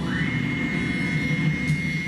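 Electronic synthesizer music: a high synth tone sweeps up quickly at the start and then holds one steady pitch over a low droning note.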